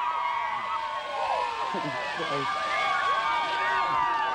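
A large crowd shrieking and cheering, many voices overlapping at once, in reaction to dozens of Diet Coke and Mentos geysers going off over their heads.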